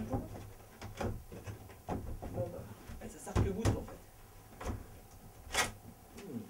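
Irregular wooden knocks and bumps from an old short wooden box bed built into the panelling as someone climbs out of it: the bed boards and panels knock under hands and feet. The loudest knocks come about halfway through and again near the end.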